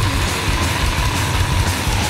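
Dense, distorted extreme metal: heavy guitars over a pounding low end of bass and drums. A long held high note runs through it and slides down in pitch near the end.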